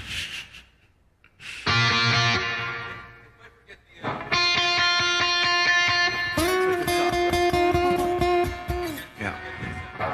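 Guitar chords of a song in B, among them C-sharp minor and F-sharp major, being demonstrated: one chord struck about a second and a half in and left to ring out, then a held chord from about four seconds in that changes to another chord about halfway through and stops near the end.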